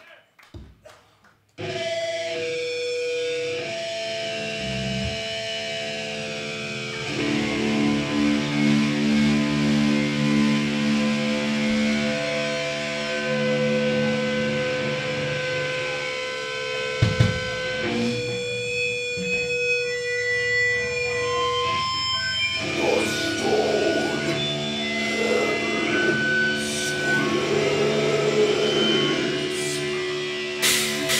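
Heavy metal band playing live, starting abruptly about a second and a half in: distorted electric guitars hold long ringing notes that change pitch every few seconds, with the playing growing busier in the last several seconds.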